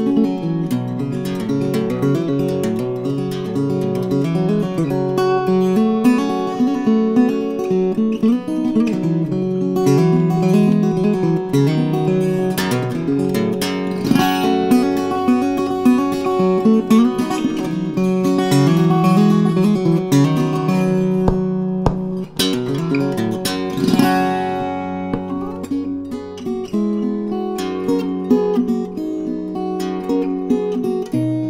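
Solo fingerstyle acoustic guitar, an Olav Löf "Ole" guitar in DADGBD tuning with a capo at the 4th fret, playing a continuous picked melody over bass notes, with a brief break about three quarters of the way through.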